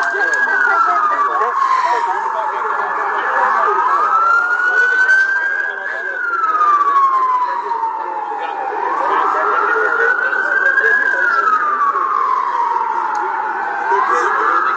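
An emergency vehicle's siren wailing, its pitch rising and falling slowly, about one full cycle every five seconds.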